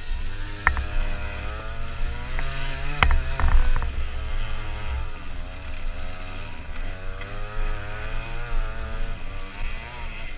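Scooter engine revving up and down as it rides over rough trail ground, with a few sharp knocks from bumps about a second in and around the three-second mark.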